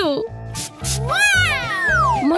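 A long meow-like comic sound effect that rises and then slides down in pitch through the second half, over background music with a steady beat.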